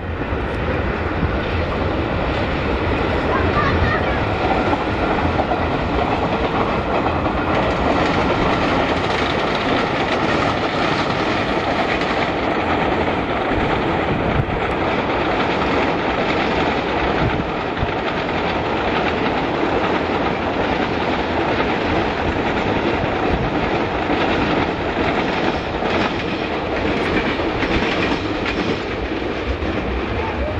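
Indian Railways passenger train, an electric locomotive hauling a long rake of coaches, running past with the steady noise of its wheels on the rails.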